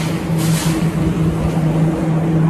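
Handling noise from a handheld phone being moved about, rumbling on the microphone, with a short rustle about half a second in, over a steady low hum.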